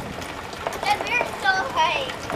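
Young children shouting and squealing at play, their high-pitched calls starting about a second in, over a steady hiss of falling rain.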